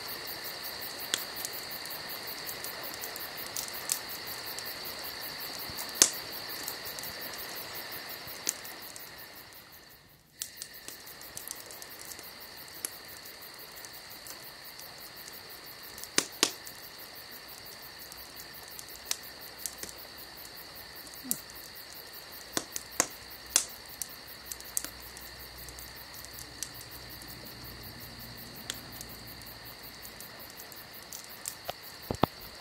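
Steady high-pitched chirring with a fast even flutter, broken by scattered sharp clicks; it fades out briefly about ten seconds in and then comes back.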